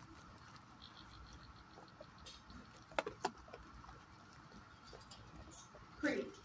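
A dog close by making two short, sharp sounds about three seconds in, a quarter second apart, over a faint steady hum in a quiet room.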